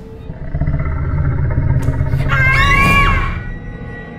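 Horror soundtrack sting: a low rumble swells up, then a short roaring shriek that rises and falls in pitch comes near three seconds in, and the sound fades away.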